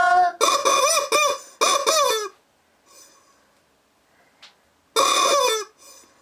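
Cartoonish chicken clucking and squawking: a quick run of short calls that rise and fall in pitch over the first two seconds, then a pause, then one more call about five seconds in.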